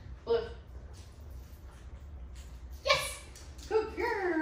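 Three short, high-pitched vocal sounds: one about a third of a second in, one about three seconds in, and one just before the end, over a steady low hum.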